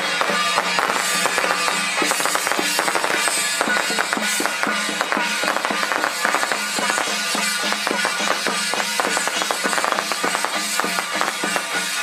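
Taiwanese temple-procession percussion troupe playing small waist drums, hand gongs and cymbals, struck in a quick, dense rhythm over a steady low hum.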